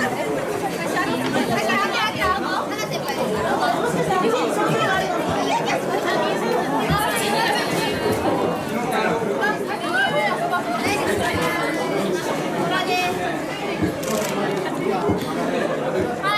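A group of girls chattering and talking over one another, many voices at once with no single speaker standing out.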